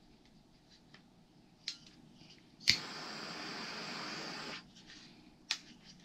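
A handheld gas torch clicks as it is lit, and its flame hisses steadily for about two seconds before it is shut off. A few sharp clicks come before and after.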